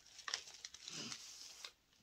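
Faint crinkling and rustling of clear plastic packaging being handled and pulled off a boxed eyeshadow palette, with a few small clicks.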